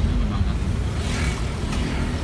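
Steady low rumble of a moving road vehicle: engine and tyre noise while driving along a paved road.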